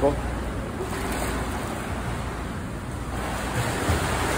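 Swimming-pool water splashing and lapping in a steady wash as a swimmer moves through the lane, a little louder in the last second.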